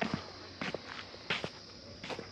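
Footsteps on a dirt road: three steps at an even walking pace.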